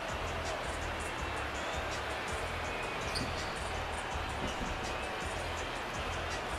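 Arena background music with a steady low beat, over the court sounds of a basketball game in play.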